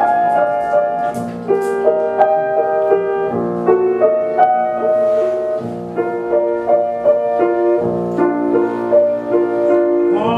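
Grand piano playing a slow classical introduction, broken chords over low bass notes, before the tenor's vocal entry in an operatic song.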